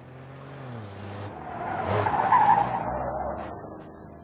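A car driving past: its engine grows louder to a peak about halfway through and then fades away.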